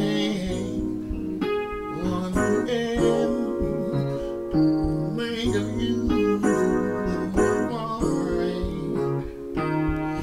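Electronic keyboard played live with a piano-like voice: sustained chords over changing bass notes.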